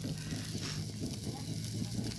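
Beef satay skewers sizzling over an open charcoal fire, a steady hiss with faint crackle, with faint voices underneath.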